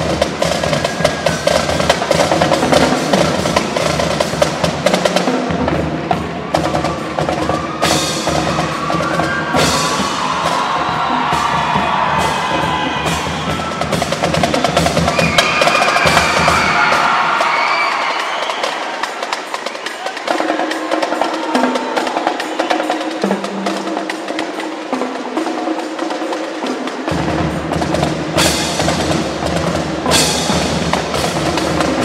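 Marching band playing live: drums keep a busy, rapid beat throughout while the brass carry a melody that is loudest through the middle. The deep bass drops out for several seconds in the second half and comes back near the end.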